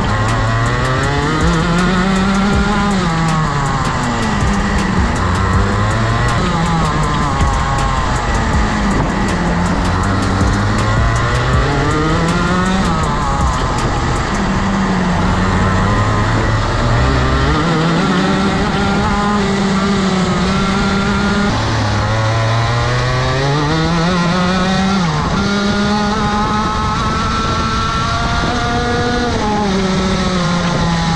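Onboard sound of a Rotax Max 125cc two-stroke kart engine at racing speed, its pitch climbing as it accelerates down each straight and dropping as the driver lifts and brakes for the next corner, over and over through the lap.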